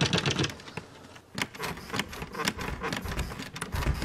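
Rapid, irregular tapping and knocking, several hits a second, with a brief lull about a second in.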